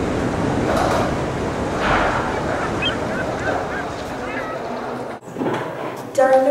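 Sea waves and surf, a steady loud rushing that cuts off suddenly about five seconds in.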